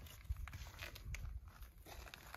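Faint footsteps on a gravel garden path, a few soft crunches over a low, irregular rumble.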